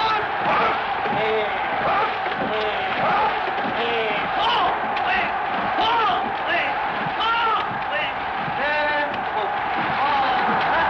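A rowing coxswain shouting repeated calls through a megaphone to drive his crew's stroke, over a steady haze of background noise.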